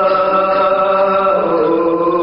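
A man's voice chanting an Urdu marsiya (elegy) in long, slow held notes, the line stepping down in pitch about three-quarters of the way through.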